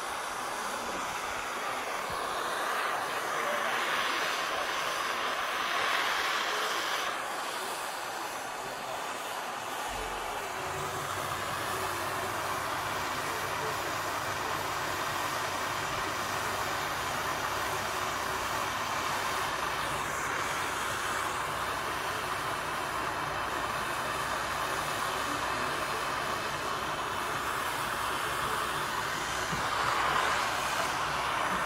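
Handheld gas torch burning with a steady hiss as it heats body lead. A low hum joins about ten seconds in and runs on beneath it.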